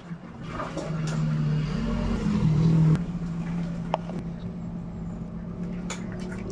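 A motor engine runs with a steady low drone, stepping in pitch and growing louder until about three seconds in. It then drops suddenly to a quieter, steady running. A short click comes about four seconds in.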